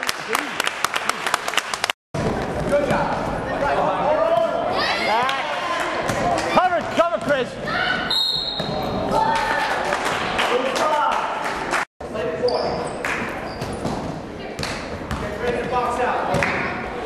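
Basketball game sounds in a gym hall: a ball bouncing on the hardwood court and players' and spectators' voices calling out, all echoing in the room. The sound cuts out completely twice, briefly, where the recording is edited.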